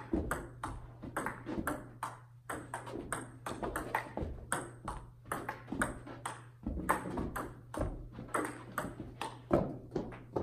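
Table tennis rally: the ball clicks off the paddles and the table in quick, irregular succession, several hits a second. A steady low hum runs underneath.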